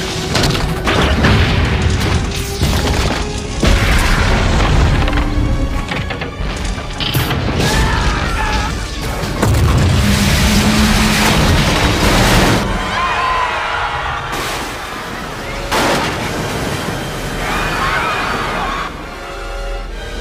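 Film sound of a great ship's hull breaking apart: heavy booms and crashing of metal over a deep rumble, with orchestral score underneath and voices crying out at several points.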